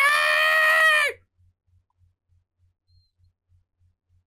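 A woman's voice-acted battle cry, the long held last word of Android 18's shout as she powers up, cutting off about a second in. After it, near silence with only a faint low pulsing about three times a second.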